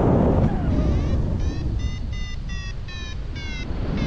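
Paragliding variometer beeping: a quick run of short pitched beeps, about two to three a second, the climb tone that signals rising air. Steady wind rushing over the microphone underneath.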